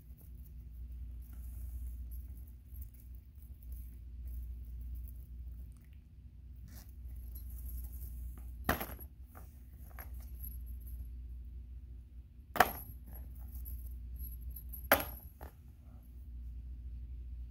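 Metal costume chain and collar being handled: soft clinks of the links, with three sharp metallic clicks, the first about halfway through, the loudest a few seconds later and the last near the end, over a steady low hum.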